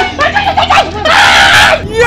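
Short shouted exclamations, then about halfway through a person's loud scream lasting under a second.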